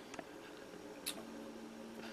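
Faint handling noise as a plastic mold trimming tool is pulled straight up out of the liquid clay slip in a plaster mold's pour gate, with two small clicks, a soft one near the start and a sharper one about a second in.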